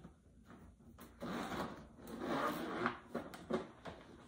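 The zipper of a plaid picnic bag being drawn open in two long pulls, followed by a few small clicks.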